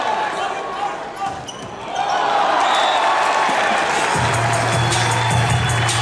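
Indoor volleyball arena sound of a rally: crowd voices shouting, with sharp knocks from the ball being struck. About four seconds in, the point ends and arena music with a steady low bass starts.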